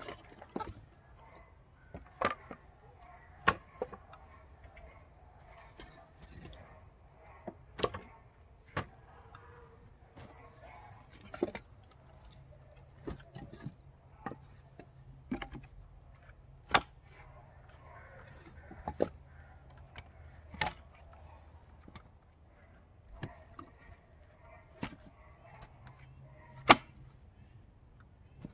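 Split madrona firewood pieces knocking against one another as they are set onto a woodpile, one sharp wooden clack every second or two at an irregular pace, over a faint low hum.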